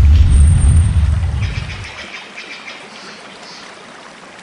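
Logo-reveal sound effect: a deep rumbling boom that fades away over about two seconds, leaving a soft high shimmer.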